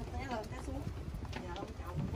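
Footsteps on stone steps as someone climbs, with voices talking over them.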